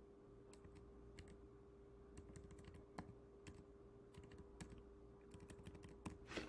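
Faint, irregular keystrokes on a computer keyboard, scattered clicks over a steady faint hum.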